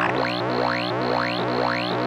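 Synthesized robotic radio-interference sound effect: a steady low electronic hum under rapid falling chirps, about four a second.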